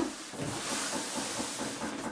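Cardboard shipping box sliding across a laminate floor, a steady scraping hiss lasting about two seconds.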